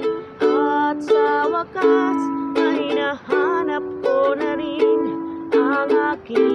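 Strummed ukulele playing a chord progression of D, A, Bm7 and A, with a woman singing the melody in Tagalog over it.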